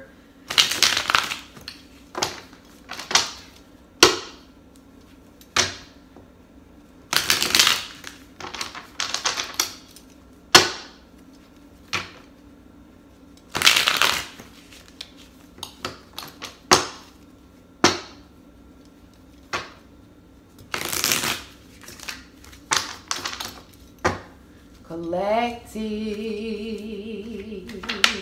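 A deck of tarot cards being shuffled and cut by hand: a long run of short bursts of card noise, some quick snaps and some lasting about half a second. A voice hums a note near the end.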